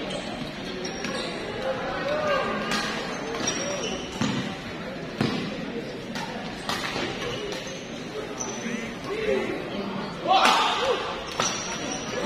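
Badminton rackets striking a shuttlecock in an indoor hall, sharp cracks a second or more apart, with brief high squeaks from shoes on the court. A crowd chatters all the while, and their voices swell about ten seconds in.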